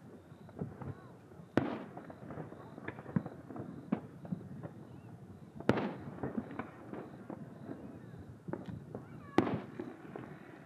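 Distant aerial fireworks shells bursting: three big booms, about a second and a half in, near the middle and near the end, the last the loudest, with lighter pops and crackle between them.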